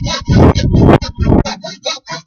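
Fine-tooth hand saw cutting a crosscut in wood, rasping back-and-forth strokes: a longer stroke near the start, then a run of short, quick ones.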